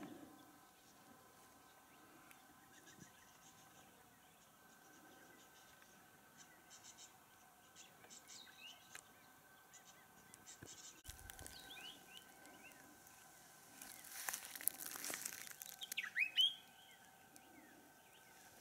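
Faint, scattered bird calls, short chirps coming now and then over a quiet waterhole ambience. A brief rush of noise comes a few seconds before the end.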